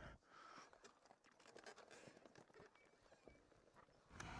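Near silence, with only faint scattered ticks and rustles.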